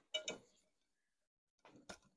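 Wire whisk stirring batter in a glass bowl: a brief cluster of faint clinks just after the start, then quiet, then a single click near the end.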